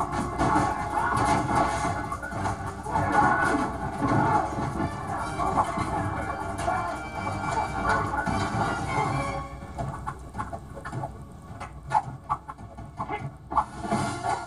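Fast action-film music from a TV's speakers, mixed with the sharp hits and thuds of fight sound effects. After about nine seconds the music drops away, leaving a quick run of separate impact sounds.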